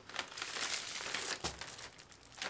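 Plastic packaging crinkling as a wrapped roll of store-bought baklava phyllo is pulled out of its bag and handled: a continuous rustle with small crackles and one sharper crackle about halfway through.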